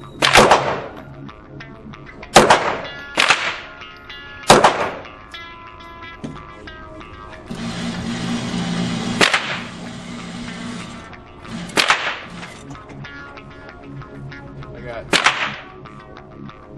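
Single shots from a 9mm Ruger SR9 pistol fired at an indoor range, about seven in all and irregularly spaced, each with an echoing tail.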